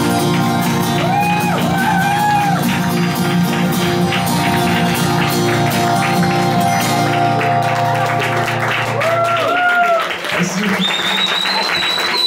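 Two acoustic guitars strumming the last bars of a song, the chord ringing until about three-quarters of the way through. Then the audience responds with shouts and clapping, and a long high whistle is held near the end.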